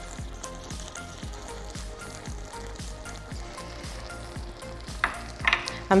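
A pot of cocoyam pottage cooking on the stove, just topped up with stock, with a steady low sizzle and bubble.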